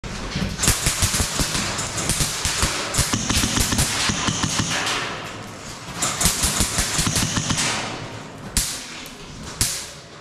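Airsoft guns firing in rapid automatic bursts, one running from just after the start to about five seconds in and another from about six to eight seconds. Two single loud shots follow near the end.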